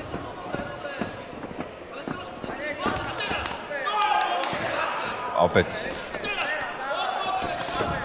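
Boxing coaches shouting instructions to their young boxers, heaviest in the middle seconds, over scattered thuds from the boxers' footwork and punches in the cage.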